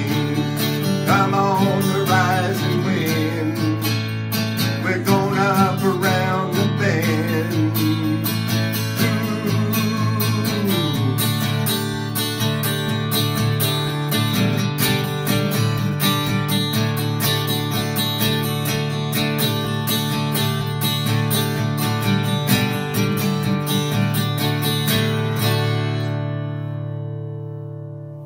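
Acoustic guitar strummed steadily, with a voice singing along over roughly the first ten seconds. The strumming stops about 26 seconds in and the last chord rings out and fades away.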